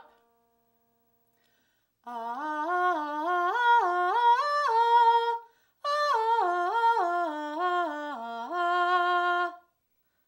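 A woman singing a broken-chord vocal exercise, sequences of short triad notes stepping up in pitch. After a brief break about halfway through, the notes step back down, ending on a held note.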